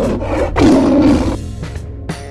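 A cartoon Tyrannosaurus roar sound effect: one loud roar starting about half a second in and fading near the middle, over background music.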